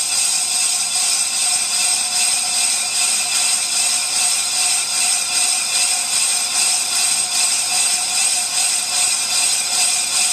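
Ammco brake lathe cutting a cast-iron brake drum: the tool bit shaving the inner braking surface of the spinning drum under automatic feed. It makes a loud, steady, high-pitched ringing with a slight regular pulse.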